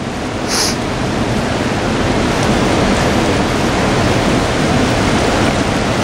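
Fast, choppy river current rushing steadily, a loud even noise with a brief higher hiss about half a second in.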